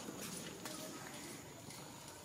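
Faint, scattered soft clicks of a pigtail macaque smacking its lips, over a low background hiss.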